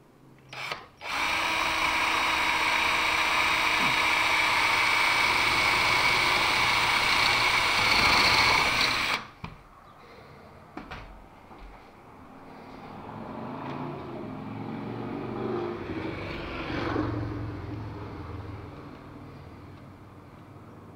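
Craftsman power drill: a brief trigger tap, then the motor runs steadily at one speed for about eight seconds with the bit against the wooden sill board at the shelf bracket, and stops suddenly. Quieter handling sounds follow.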